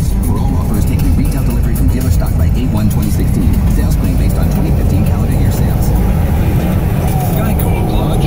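Steady, loud road and engine rumble heard inside a vehicle's cabin at highway speed.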